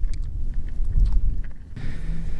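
Wind buffeting the microphone: a loud, low rumble, with a few faint clicks over it.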